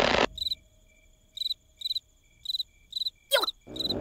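Crickets chirping in short, evenly spaced trills after a loud noise cuts off a moment in. Just after three seconds a quick falling whistle-like glide sounds, and a rush of sound swells up near the end.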